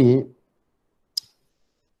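The end of a man's word, then a pause with nothing to hear except one short, sharp click just over a second in.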